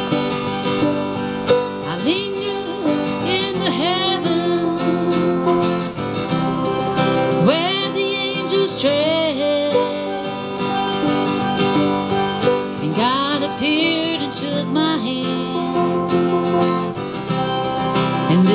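Acoustic guitar strummed steadily under a melodic lead line that slides and bends in pitch, an instrumental passage of a folk-style song.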